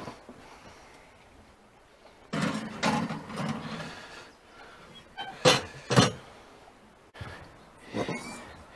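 Oven door worked while a glass baking dish is put in: a clattering noise lasting about two seconds as the door is opened and the dish set inside, then two sharp knocks half a second apart as the door is shut.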